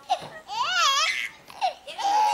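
Infant laughing: a short laugh, then a long high squeal that wavers up and down, then a brief squeak near the end.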